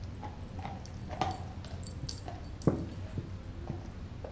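Doberman gnawing a raw beef leg bone: irregular clicks, scrapes and cracks of teeth on bone, with one sharper crack about two-thirds of the way through.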